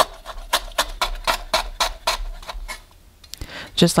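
Knife slicing a lemongrass stalk into thin rounds: a quick, even run of cuts, about four a second, stopping about three seconds in. A woman's voice says a word near the end.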